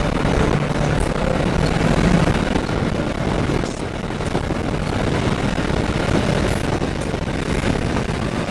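Porsche Cayman at speed on a race track, heard from on board: a loud, steady rush of engine, wind and tyre noise, easing briefly about four seconds in.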